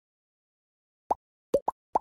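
Silence, then four short cartoon 'pop' sound effects in quick succession starting about a second in, each a quick upward-sliding blip, as graphic elements pop onto an animated title card.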